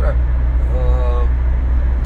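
Steady low rumble of a car's road and engine noise heard inside the cabin while driving. A man makes one short held 'mm' sound about a second in.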